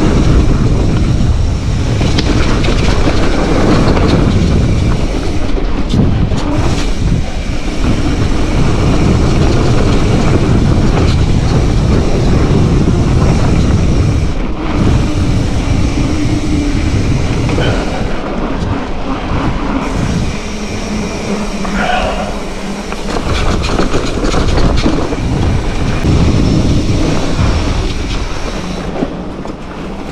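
Mountain bike ridden fast on packed-dirt singletrack: continuous tyre rumble on the dirt, the bike's chain and frame rattling over bumps, and wind buffeting the microphone.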